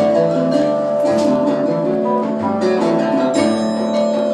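Live percussion ensemble with guitar playing: steady held tones under a busy figure of quick plucked and struck notes, the texture shifting a little past three seconds in.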